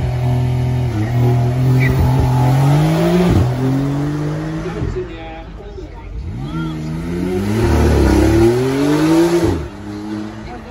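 Supercar engine accelerating hard, its pitch climbing and dropping at each upshift about three and five seconds in. After a short lull a second run builds, loudest near the end, then falls away.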